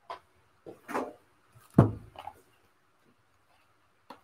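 Handling noises as boxed oracle-card decks are fetched: a few short knocks and rustles, with one louder thump just under two seconds in.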